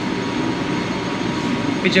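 Steady hum of a ship's engine control room: engine-room machinery and ventilation running, with a thin steady whine over it.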